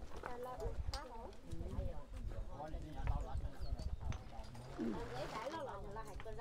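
Several people talking at once in the background, no clear words, over a run of low knocks and thuds.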